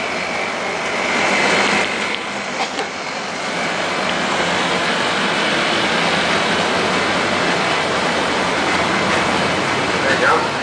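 Steady rushing street background noise, with a few faint clicks in the first few seconds.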